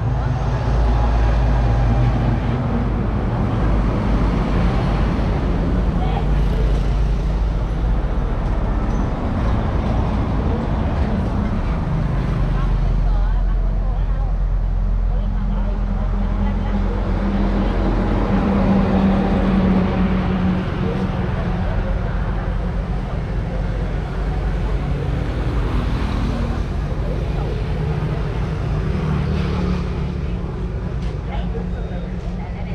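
Steady road-vehicle engine and traffic noise, a low rumble that swells and eases, with indistinct voices in the background.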